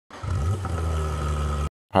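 A car engine running for about a second and a half, then cutting off suddenly.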